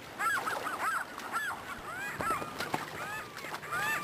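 Several gulls calling, a quick run of short, overlapping cries that rise and fall in pitch, over the rush of a shallow river.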